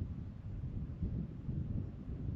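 Wind buffeting the microphone: a low, gusty rumble that rises and falls.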